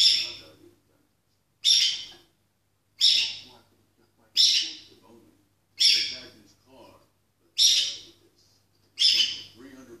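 Peach-faced lovebird calling loudly, a sharp, high call about once every second and a half, seven in all. TV dialogue is faint underneath.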